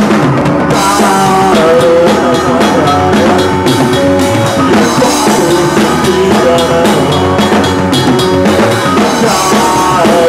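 Live rock band playing loud, the drum kit's kick and snare hits keeping a steady beat under the pitched instruments.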